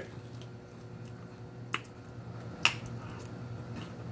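Two sharp clicks about a second apart as a forkful of tuna salad with croutons is bitten and chewed, over a faint steady low hum.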